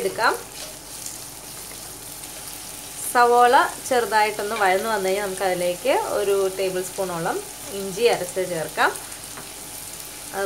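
Chopped onions sizzling in oil in a nonstick kadai. From about three seconds in, a wooden spatula stirring against the pan gives a run of short squeaks and quick rising squeals that stop shortly before the end.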